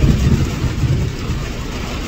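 Road and engine rumble heard inside a moving SUV's cabin in the rain, a steady hiss over a low rumble that is heavier in the first second.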